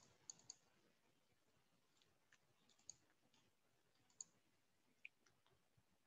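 Near silence with about six faint, sharp clicks from a computer mouse and keyboard, three of them close together near the start and the rest spaced out after that.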